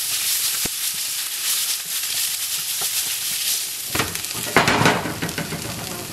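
Asparagus sizzling in olive oil in a skillet, stirred with a spatula. There is a sharp click about half a second in, and louder scraping and clatter about four seconds in.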